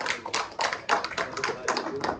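People clapping in brief applause, with the individual claps distinct. It starts just before and stops just after.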